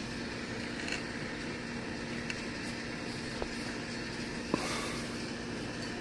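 A few light metal clicks, four in all, as lug nuts are turned by hand onto a trailer wheel's studs, over steady background hiss with a faint hum.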